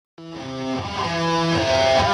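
Electric guitar playing a melody of held notes, live on stage; it starts just after the opening and grows steadily louder.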